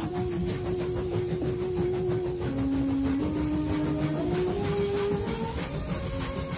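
A train running with a steady, rhythmic clatter and hiss, under background music with slow held notes.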